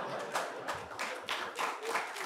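Scattered, irregular clapping from a seated audience, a handful of people applauding a joke.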